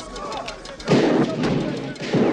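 Film gunfire sound effect: a sudden loud gunshot blast about a second in, dying away over most of a second.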